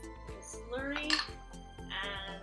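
Glass jars clinking and knocking as a small glass jar and its lid are handled against a glass bottle, over light background music.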